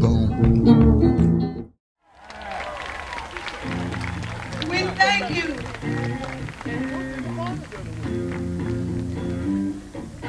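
A song cuts off abruptly just under two seconds in. After a brief silence, a live band starts playing: electric guitars and bass guitar, with held and bending notes.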